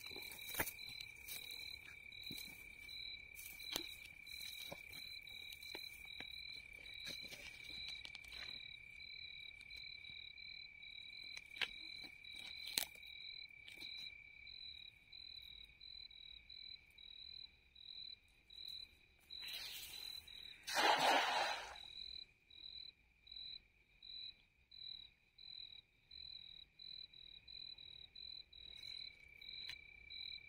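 Night insects chirping steadily in two layers: a high-pitched steady trill, and a higher one pulsing about twice a second. About twenty seconds in, a loud rushing splash of a thrown cast net hitting the water, with a few light clicks of net handling earlier.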